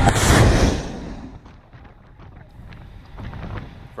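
M142 HIMARS rocket launch heard from on the launcher: a sudden loud blast of rocket exhaust that fades over about a second as the rocket leaves, trailing off into a low rumble.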